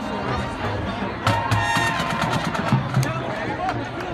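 High school marching band playing its field show, with a steady low beat and a bright, sharp accent a little over a second in. Spectators chatter close by.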